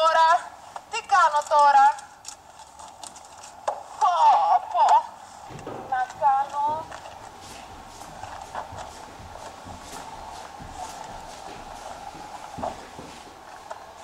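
A woman singing loudly in short, high, drawn-out phrases, then quieter for the second half with only a faint steady hum and a few soft knocks.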